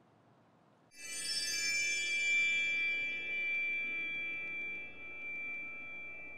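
Short outro music sting: after about a second of near silence, a chord of many high, bell-like ringing tones strikes at once and rings on, slowly fading.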